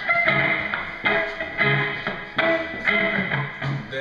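Electric guitar playing a song's instrumental opening: single notes picked at a steady pace, about two a second, a low bass note alternating with higher ringing notes.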